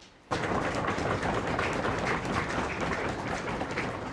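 Audience applause, starting suddenly about a third of a second in and going on steadily.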